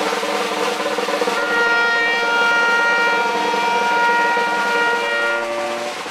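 Cimarrona street band: a snare drum roll, then about a second and a half in, the horns (saxophone, trumpet, trombone) come in with a long held chord over the drums, changing to lower notes near the end.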